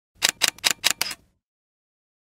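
A quick run of five sharp clacks, about five a second, the last one a little longer: a typing-like sound effect on the channel's intro.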